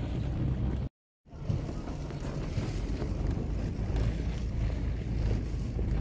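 Low, steady rubbing noise from a handheld camera's microphone being carried along while walking, with a sudden brief dropout to silence about a second in, where the recording is cut.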